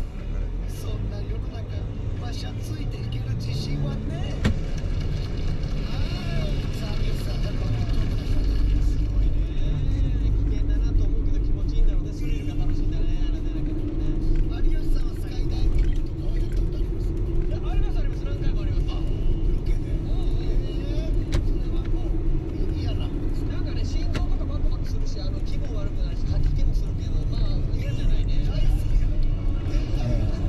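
Car engine and tyre rumble heard from inside the cabin while driving, with a steady drone that rises a little in pitch through the middle and settles again.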